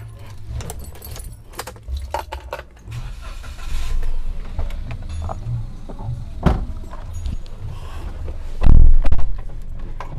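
Handling noises of someone getting into the driver's seat of a Toyota Agya: scattered clicks and knocks over a low rumble, a sharp knock about six and a half seconds in, and a heavy low thump near the end.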